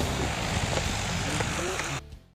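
A steady low rumble of outdoor background noise with faint voices mixed in; it cuts off suddenly at the end.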